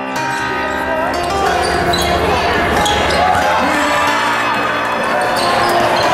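Live sound of a basketball game in a gym: a ball bouncing on the hardwood court and crowd voices echoing in the hall, with music faintly underneath.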